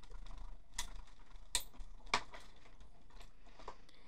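Acrylic cutting plates with dies being rolled through a Stampin' Up! manual die-cutting machine. A faint steady rumble runs under four or five scattered sharp clicks.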